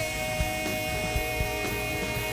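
Live pop-rock band: a male singer holds one long note over drums, bass and electric guitar.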